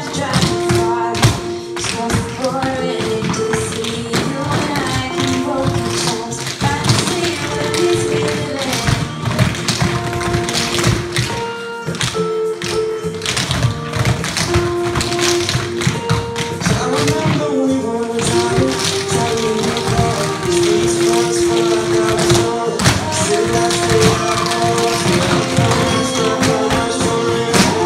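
Tap shoes of a group of dancers striking a wooden floor in rapid, busy rhythms, over recorded music.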